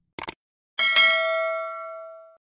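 Two quick clicks, then a bright bell chime that rings and fades over about a second and a half: the click-and-bell sound effect of a YouTube subscribe-button animation.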